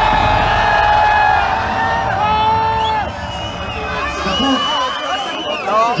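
Concert crowd cheering and screaming in answer to a call for noise. There are long held yells over a low bass that stops about halfway through, then scattered rising whoops.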